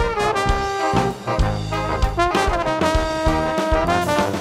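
Brass band playing live: trumpets and trombones hold and change notes together over bass and drums, with sharp drum hits cutting through.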